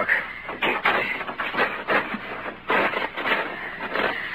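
Radio-drama sound effects of the stalled car being checked: a run of irregular crunching knocks and scrapes, about two or three a second.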